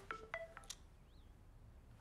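Mobile phone ringtone: a few short electronic notes stepping in pitch in the first second, then stopping as the call is picked up.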